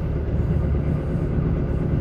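Steady low rumble of a KiHa 85 diesel railcar running, heard from inside the car: its diesel engine and the wheels on the rails.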